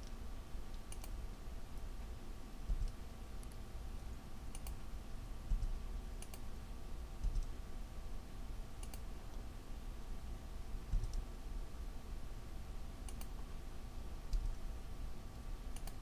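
About a dozen short, sharp, widely spaced clicks from a computer mouse and keyboard, made while routing a circuit board layout on screen, over a steady low hum.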